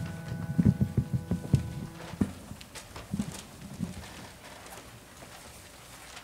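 A piano chord dies away over the first two seconds, overlapped by a run of irregular thumps and knocks. Sparse faint clicks and rustles follow: choir members shifting on the risers and opening their folders.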